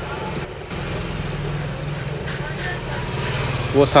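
An engine running steadily nearby, a low even hum that holds its pitch throughout.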